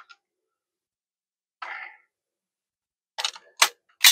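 Near silence at first, then a brief soft rustle, and near the end a quick run of several sharp clicks from multimeter test leads and clips being handled on the workbench.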